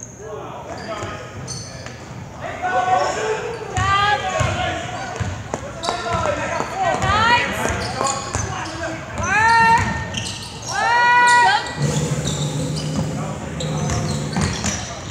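Basketball game in a gym: a ball dribbling on the hardwood court, with several short rising sneaker squeaks and spectators' voices echoing in the hall.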